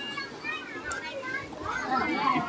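Children playing and calling out, with people talking over one another.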